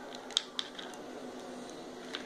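A hard plastic toy car and doll being handled by hand, giving a few light plastic clicks, the sharpest about a third of a second in, then only a faint hiss.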